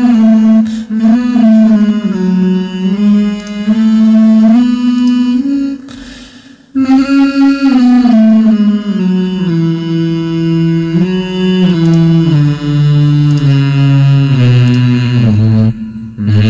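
Playback of a recorded male vocal line with pitch correction applied by hand. Each held note sits dead level and jumps sharply to the next. The line breaks off briefly about six seconds in, then goes on.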